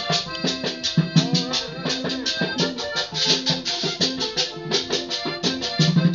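Live vallenato-style music: a button accordion playing over a fast scraped guacharaca rhythm, with a hand drum and guitar underneath.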